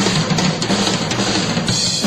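Drum kit being played, cymbals ringing over kick and snare hits, with a steady low note underneath.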